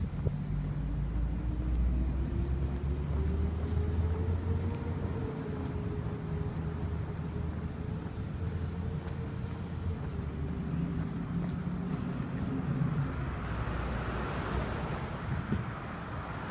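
Motor vehicle running: a low rumble with an engine tone that rises over the first five seconds and then holds steady. Road noise swells near the end.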